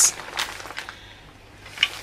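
A few light clicks and taps from a hinged plastic drill bit case being handled, its lid moving, with the loudest tap near the end.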